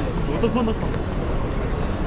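Busy street ambience: passersby's voices over a steady low rumble of traffic, with a car creeping past close by.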